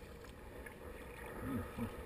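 Water sloshing and lapping against a Fluid Bamba sit-on-top plastic kayak as it is paddled on choppy sea. A short low voice-like sound comes twice near the end.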